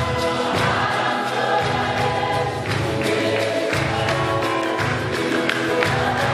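A gospel choir singing a worship song together, over a bass line and a steady beat of percussion and hand clapping.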